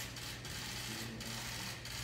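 Boxing-gym background noise: a steady low hum with a few scattered light clicks and rattles.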